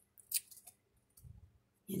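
Stiff collaged page of a three-ring binder being turned by hand: one short crisp snap of card and paper, then a few faint rustles and taps.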